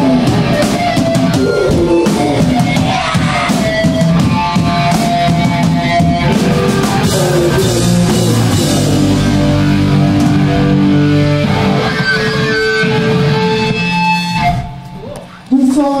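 A live hardcore punk band playing loud, with distorted electric guitar, bass and a drum kit. The music breaks off sharply near the end.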